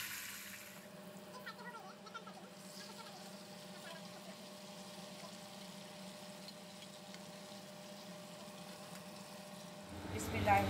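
Whole sea bream shallow-frying in hot oil in a pan, a faint steady sizzle.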